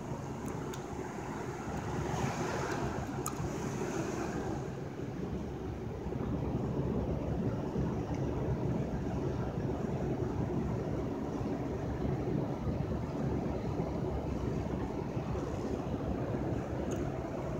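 Steady low rumble with a hiss over it, like street or vehicle background noise, with a few sharp clicks in the first four seconds.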